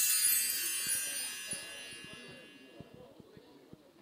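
A bright, shimmering chime sting of the kind played as a broadcast graphic comes on screen: many high ringing tones struck together and fading out over about three seconds. Faint ambient noise with a few small ticks lies beneath.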